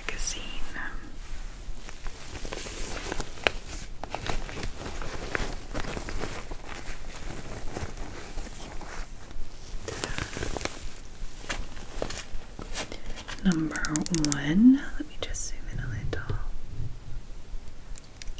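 Long acrylic nails handling and tapping a small plastic pump bottle and items in a fabric cosmetics pouch: soft rustling and scattered clicks, with a run of quick nail taps a little after the middle.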